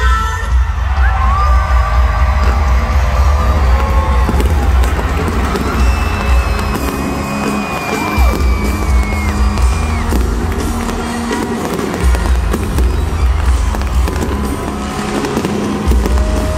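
Loud concert music with a heavy bass beat over a cheering stadium crowd, with fireworks crackling and popping overhead. The bass drops out briefly a couple of times.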